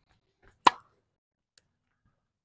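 A tennis ball impact on a hard court rally, a single sharp pock about two-thirds of a second in.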